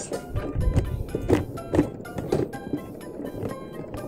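Background music with short, bouncy notes and light taps.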